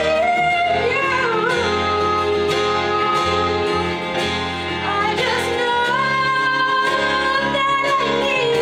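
A woman singing a slow song into a microphone over instrumental accompaniment, with short vocal runs and a long held note in the second half.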